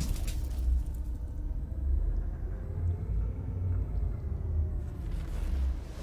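Cinematic title sound effect: a deep, steady rumble, swelling into a noisy whoosh near the end.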